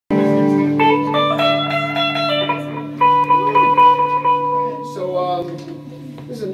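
Electric guitar through an amplifier: a chord rings out, then a short run of single notes and one high note held for about two seconds before it fades. A low steady hum runs beneath.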